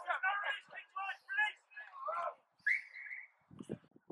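Rugby players shouting calls around a ruck, then one short blast of the referee's whistle just under three seconds in.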